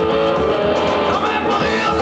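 Live rock band playing loud and steady, with electric guitars, bass and drums.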